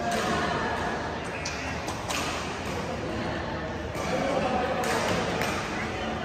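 Voices talking in a large, echoing indoor sports hall, with a few sharp clicks and knocks from play on the badminton courts, about four of them spread through the few seconds.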